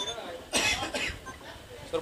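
A person coughing once, a short harsh burst about half a second in, over faint background voices.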